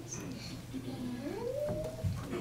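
A voice holding a low note, then gliding smoothly up into a higher note that is held until near the end.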